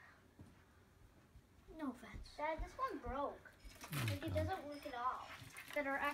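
Indistinct talking in a room: a high voice rising and falling in pitch, joined about four seconds in by a low male voice.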